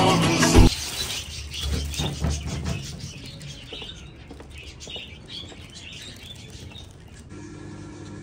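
Background music cuts off under a second in, followed by a quieter stretch of birds chirping and a plastic carrier bag crinkling. Near the end a steady low hum comes in.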